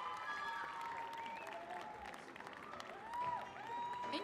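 Audience applauding in a large hall, with cheering voices and a few drawn-out high calls about three seconds in.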